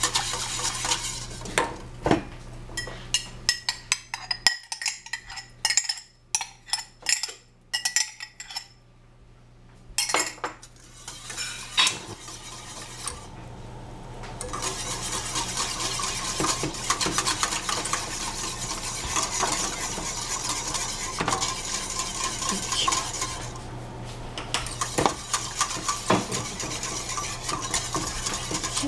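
A utensil stirring warm chocolate milk with yogurt starter in a pot. First comes a run of sharp clinks against the pot over roughly the first dozen seconds, then steady scraping stirring with a few knocks.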